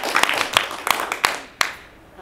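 Small audience clapping irregularly, with some laughter, dying away after about a second and a half.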